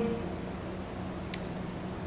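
Pause between words: steady room noise with a faint low hum, and one small click about halfway through.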